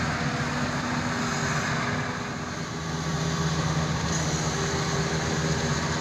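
Rice combine harvesters' engines running steadily, a continuous low drone with a hiss over it, as a second combine moves up through the paddy to the one stuck in the mud.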